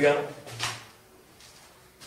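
A man's voice finishing a word, followed about half a second in by a brief noise and then quiet room tone in a small room.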